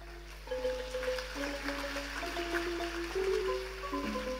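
Thai classical ensemble music accompanying a dance-drama: a melody of held notes that move step by step. It grows louder about half a second in.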